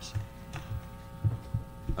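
Steady electrical hum from the meeting's microphone and sound system, with a few soft low thumps.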